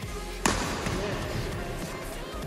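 A badminton racket strikes a shuttlecock once, a sharp crack about half a second in that rings on in the large hall.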